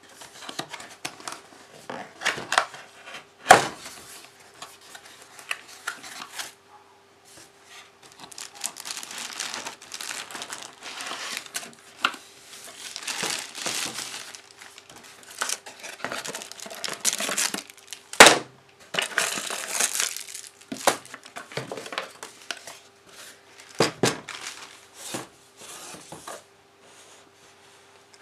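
Cardboard box flaps being opened and a clear plastic bag crinkling as a disco ball light is unwrapped by hand, in intermittent rustles. A few sharp knocks stand out, the loudest a few seconds in and about two-thirds of the way through.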